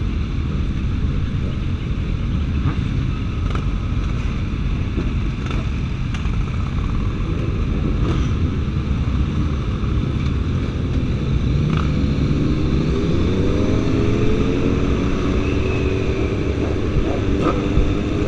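Several sport motorcycle engines rumbling in a slow-moving pack. From about two-thirds of the way in, the engine pitch climbs as the bikes accelerate away.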